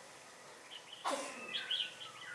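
Red-whiskered bulbuls calling: a short downward call about a second in, then a few quick high chirps over a quiet outdoor background.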